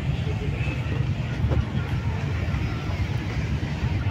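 Outdoor beach ambience: a low, uneven rumble with faint voices of people around.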